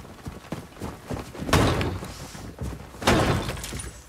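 Two heavy crashing blows against a wooden door or wall, about a second and a half apart, each with a splintering tail, after a few lighter knocks: the storehouse door being forced open.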